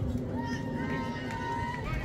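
Voices of players and spectators calling out across a baseball field, one voice holding a single long call, over a steady low rumble.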